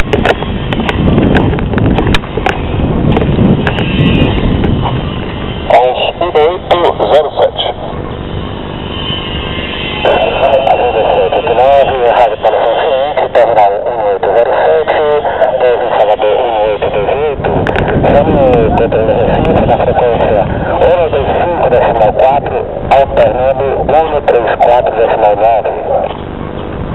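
Garbled air traffic control voice transmissions from a handheld airband radio receiver's speaker, with wind and handling rumble on the microphone. The radio voice comes through most plainly from about the middle onward.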